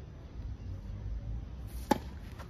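A tennis racket striking the ball once near the end, a single sharp crack: the serve of the player close by. A low steady outdoor rumble runs underneath.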